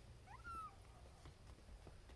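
A young kitten gives one short, high mew about half a second in, rising quickly and then held briefly.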